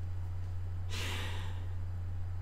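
A person's short breathy exhale, a quiet laugh through the breath, about a second in, over a steady low electrical hum.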